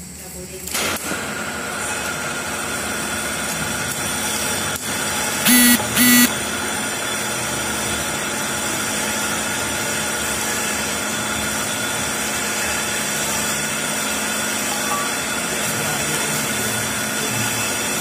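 A steady mechanical hum, like a motor running nearby, with two short loud beeps about half a second apart a little over five seconds in.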